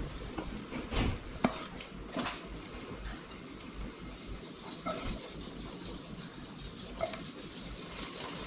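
Spatula scraping and clinking on a ceramic plate as fried onions and squid are served onto it, a few sharp clinks among quieter scrapes, over faint frying in the pan.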